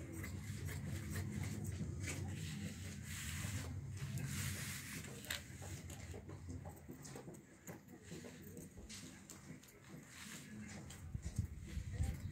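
Tailoring scissors cutting through folded cotton dress fabric: scattered snips and cloth rustling, with a stretch of hiss about four seconds in. A low steady hum sits underneath through the first half.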